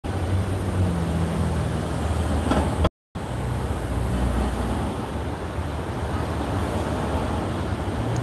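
Street traffic noise with a steady low engine rumble. The sound drops out completely for a moment about three seconds in.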